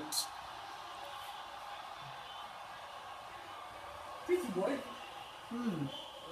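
Steady murmur of a stadium crowd heard through a television's speakers, with two short voice sounds near the end.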